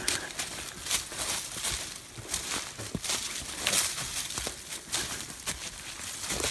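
Footsteps through dry fallen leaves and brush: irregular crunching, rustling and small twig snaps as people push through undergrowth.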